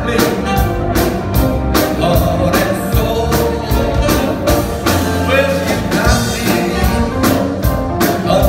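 A live rhythm and blues band playing a soulful New Orleans-style R&B song with a steady drum beat, upright bass, electric guitar, keyboard and saxophone, and a male lead singer singing over it.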